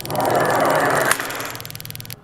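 Spark timer's spark gap snapping in a rapid, even train of about twenty sparks a second, set to 20 Hz, over a steady hum from the spark generator. Both stop near the end. A wooden lab cart rolls along the bench drawing the heat-sensitive tape, its rolling rush loudest in the first second and then fading.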